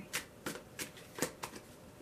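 A tarot deck being shuffled by hand, an overhand shuffle: a series of soft, irregularly spaced card slaps and taps as packets of cards drop onto the rest of the deck.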